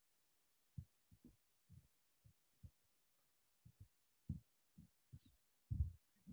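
Near silence broken by about a dozen faint, short low thuds at irregular intervals, the strongest near the end.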